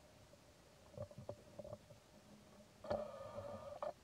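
A young macaque gives one pitched cry lasting about a second near the end, after a few brief sharp sounds about a second in.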